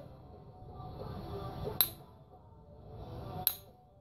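Two sharp clinks about a second and a half apart, each with a brief ring: a copper-tipped punch set on the edge of a stone piece is struck to drive off small flakes, flintknapping by indirect percussion.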